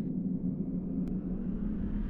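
Low, steady rumbling drone of a logo-intro sound effect, with a hum underneath and a faint click about a second in.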